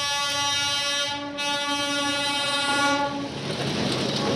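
Train horn held in one long blast of about three seconds, several steady tones together. Near the end it gives way to the noise of the train passing close by.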